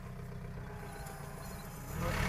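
John Deere compact tractor's engine running steadily under light load as it tows a beach rake through sand, heard as a low, even hum.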